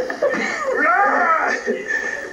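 A man's voice calling out in drawn-out cries without clear words, the pitch sweeping up and down.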